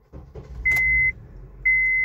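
Honda car's engine cranking over sluggishly, a low rumble, while a dashboard chime beeps twice, about a second apart. The reluctant crank is the sign of a weak battery that won't hold charge, which the owner puts down to the alternator, the battery or corrosion on the battery.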